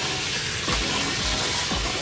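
Water running from a salon shampoo-bowl tap, refilling the basin with hotter water. A steady music beat comes in a little way in.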